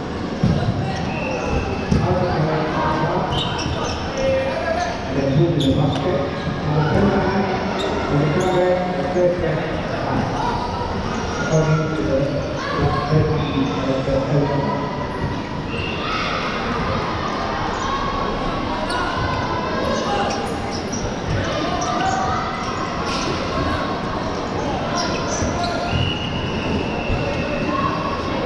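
Dodgeballs bouncing and thudding on a sports hall floor, with players' shouts and chatter throughout, all ringing in a large hall.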